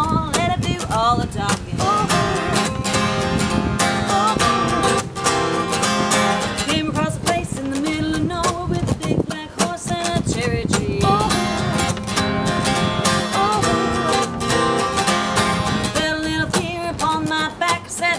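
Two acoustic guitars strummed together in a steady rhythm, with a woman singing over them.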